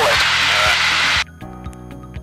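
Steady in-flight cockpit noise of a Robin R2160i light aerobatic aircraft, engine and airflow, cutting off suddenly a little over a second in. Quieter background music with a steady beat follows.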